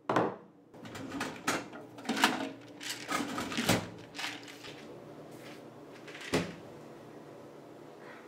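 Kitchen handling sounds: drinking glasses set down on a counter and a refrigerator door opened, a quick run of knocks and clinks over the first four seconds and one more knock about six seconds in, over a low steady hum.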